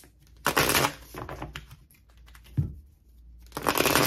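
Tarot cards being shuffled by hand: two loud bursts of dense papery riffling, one about half a second in and one near the end, with scattered card clicks and soft thumps on the table between.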